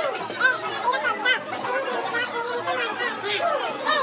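Boys' voices chattering and calling over one another, the words not clear.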